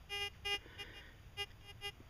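A few faint, short beeps, about four, each a brief steady tone.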